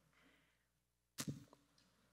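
Near silence, room tone, broken about a second in by one short, sharp click and a brief faint trail after it.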